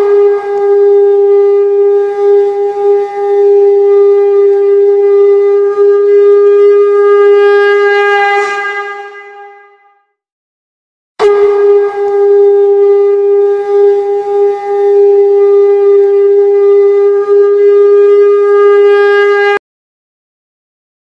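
A conch shell (shankh) blown in two long, steady blasts of about ten and eight seconds. The first fades away and the second stops suddenly. This is the conch sounded at the close of the aarti.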